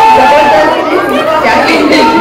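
Speech: a woman talking at a microphone with audience chatter in a large hall.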